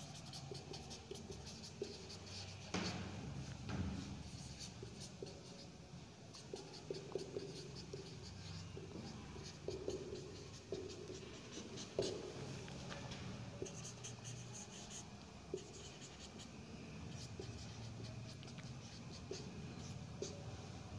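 Marker pen writing on a whiteboard: a continuous run of short strokes with faint squeaks, and a few louder taps of the pen on the board.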